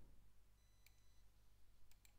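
Near silence: a faint steady electrical hum, with two faint clicks, about a second in and near the end. Thin high beep-like tones sound briefly around the first click.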